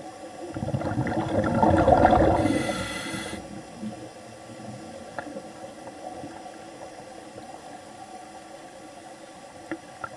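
Scuba diver breathing through a regulator underwater: a loud rush of exhaled bubbles builds over the first few seconds and ends in a brief hiss, then a quieter steady underwater wash with faint clicks.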